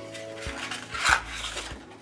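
A sheet of white cardstock rustling and scraping as hands pick it up off the mat and fold it, with the loudest rustle about a second in and a few small taps.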